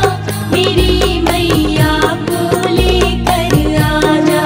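Hindi devotional bhajan music to the Mother Goddess: a bending melody over repeated low bass notes, loud and continuous.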